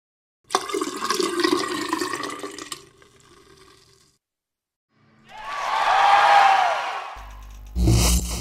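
Sound effects for animated title graphics: a sudden whooshing sting about half a second in that fades away over the next few seconds, then a swelling whoosh with a tone that rises and falls, and near the end a deep bass note with a sharp hit.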